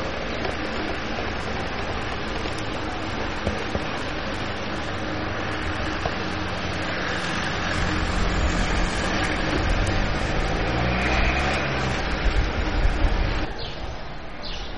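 Steady noise of a running motor vehicle with a low engine hum, louder from about halfway through, cutting off abruptly near the end.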